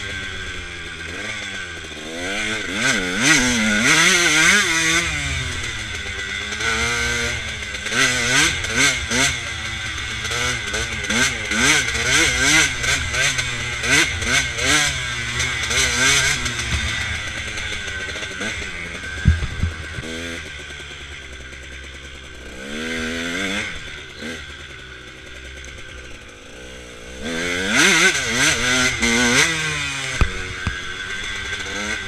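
KTM dirt bike engine heard from on the bike, revving up and down again and again as the throttle is worked. There is a sharp knock a little past the middle, then a quieter stretch at lower revs, then hard revving again near the end.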